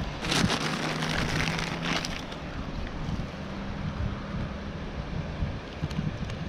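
Paper bag crackling as a pasty is unwrapped, strongest in the first two seconds. Then steady wind on the microphone with a low engine hum from traffic on the road.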